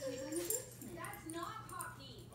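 Pembroke corgi whimpering in short, wavering whines while her sweet spot is rubbed, a sign she is enjoying it, with a person's voice alongside.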